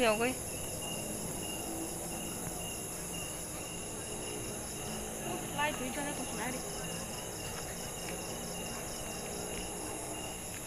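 A night-time chorus of insects, crickets among them, trilling steadily at several high pitches. A brief faint voice comes in about five and a half seconds in.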